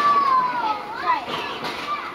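A young child's high-pitched, wordless vocal sound: one drawn-out note sliding slowly down in pitch, then a short up-and-down note about a second in.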